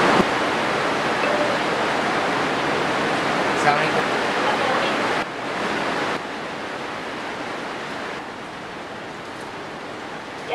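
Steady hiss of heavy rain, dropping in level about five seconds in and again about eight seconds in.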